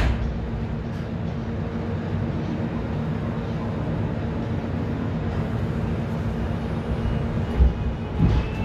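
Steady low hum inside a Seoul Subway Line 1 car standing at a station with its doors closed, with a short thump at the start and another shortly before the end.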